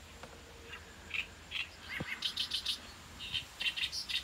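Small birds chirping in short, high notes repeated irregularly, coming more often in the second half, with one soft click about two seconds in.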